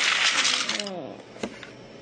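A clatter of small hard objects rattling together, with a person exclaiming 'oh' over it; the clatter dies away after about a second, and a single sharp click follows.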